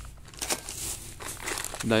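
Thin plastic bags crinkling and rustling irregularly as a hand rummages through them.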